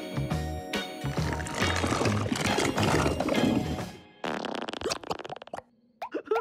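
Upbeat cartoon background music. About four seconds in it gives way to a cartoon sound effect: a rapid bubbling, squelching gurgle of about a second and a half, as of characters sinking into mud.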